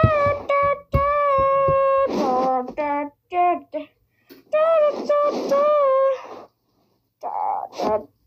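A child singing wordless, high-pitched held notes in several short phrases with brief pauses between them; one note is held steadily for about a second.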